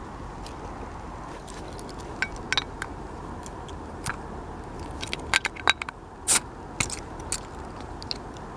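The bottle-opener blade of a Victorinox Camper Swiss Army knife clicking and scraping against the metal crown cap of a glass beer bottle as it is pried at. Scattered sharp clicks, coming thicker after about five seconds, with the loudest about six seconds in.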